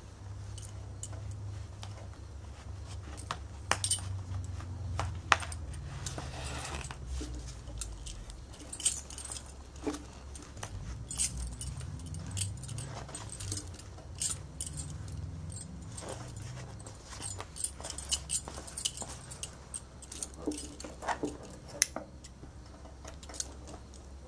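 Bangles clinking and jingling on the wrists of hands working a needle through fabric, with irregular small clicks and rustles of the cloth, over a steady low hum.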